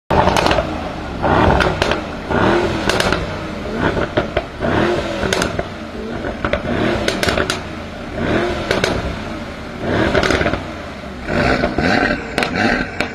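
Performance car engine revved in short blips, about one a second, each pitch rising and falling, with sharp exhaust cracks and pops as the revs drop.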